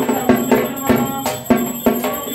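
Traditional Indian music with drums beating a quick, steady rhythm over sustained pitched tones.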